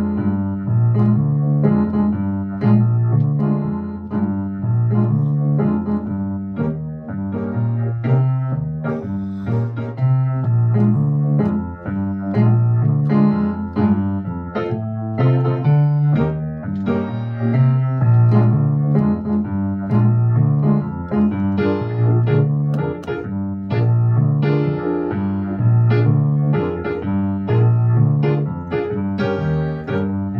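Electric keyboard with a piano sound playing a B-flat blues progression, chords over a low bass figure that repeats at an even pace.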